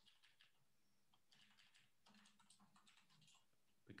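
Very faint computer keyboard typing: runs of soft key clicks, with a short pause about a second in.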